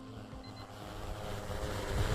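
Large quadcopter drone's rotors running as it lifts off: a steady hum under a rushing noise from the propellers that grows louder.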